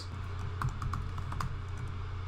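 Computer keyboard being typed on: a quick run of light key clicks as a word is entered, over a steady low hum.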